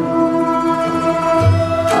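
Classical Turkish music ensemble playing an instrumental passage in makam segah, with plucked oud and kanun over bowed strings. A low drum stroke falls about one and a half seconds in.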